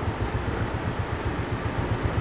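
Steady low rumble of a moving road vehicle's engine and tyre noise, with some wind noise over it.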